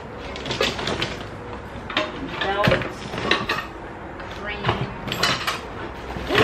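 Plastic and wire clothes hangers clattering and rattling in a cardboard box as items are rummaged through by hand, a string of short irregular clicks and knocks.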